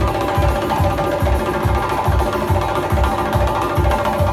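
Doira frame drums beating a steady rhythm, about three deep beats a second, inside loud live band music with held melody notes.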